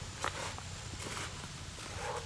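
A metal hand trowel digging into dry, stony soil: a few short gritty scrapes and strikes of the blade.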